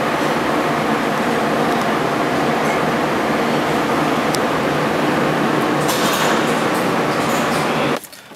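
Port-A-Cool evaporative cooling fan running steadily close by, a continuous loud rush of air with a low hum beneath it.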